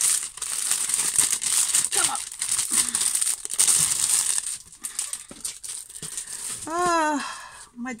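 Clear plastic packaging crinkling and crumpling as it is pulled off a rolled diamond-painting canvas, a dense crackle, busiest in the first half and thinning out toward the end.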